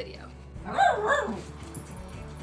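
Small dog barking, two quick yaps close together about a second in.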